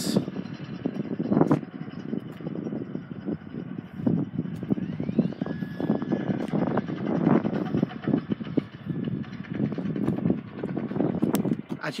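Outdoor noise from a hand-held phone microphone being carried around a parked car: uneven rustling and knocking from handling and walking over a low outdoor rumble.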